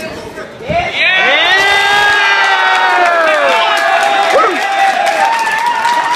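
Spectators in a hall cheering and shouting in a sudden burst about a second in, with several long, held yells overlapping. It is the crowd's reaction to a flying armbar submission.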